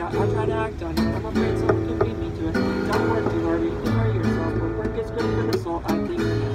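Acoustic guitar being strummed, a run of chords with the strokes coming at an uneven rhythm.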